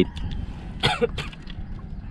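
A person clearing their throat once, a short rasp about a second in, over a low steady rumble.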